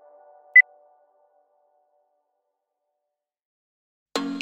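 A single short, high-pitched electronic timer beep about half a second in, marking the end of the exercise interval, while soft background music fades out.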